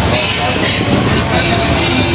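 Loud, steady low rumble of motorcycle engines running, mixed with crowd chatter and music.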